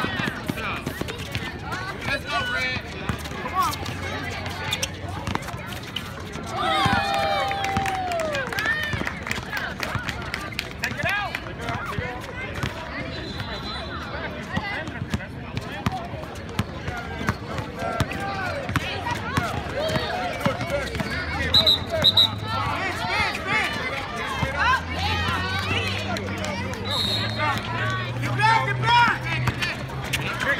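Outdoor basketball game: a basketball dribbled and bouncing on the asphalt court, running footsteps, and shouts from players and onlookers.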